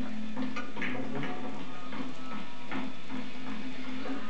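A film soundtrack playing from a television, picked up in the room: a steady low hum with a handful of irregular clicks and knocks.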